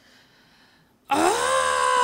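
A second of near silence, then a woman's drawn-out, high vocal exclamation of dismay that holds one pitch and starts to fall at the end.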